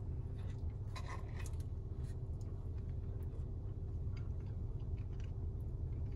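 A person chewing a mouthful of blueberry pie, with scattered faint clicks of a plastic fork on a foam takeout container, over a steady low hum in a car's cabin.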